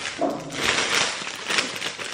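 Clear plastic packaging crinkling and rustling as it is handled and pulled open.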